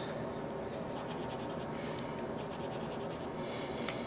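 Pen scribbling on paper, shading in squares of a puzzle grid in two short spells of quick strokes, with a single click near the end.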